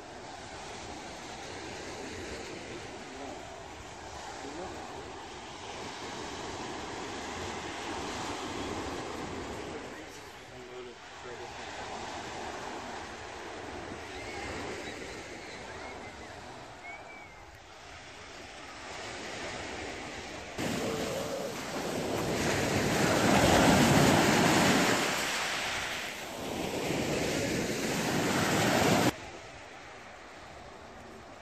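Sea surf washing onto a sandy beach, with wind on the microphone. About two-thirds of the way in, a much louder stretch of wind noise starts suddenly and cuts off abruptly just before the end.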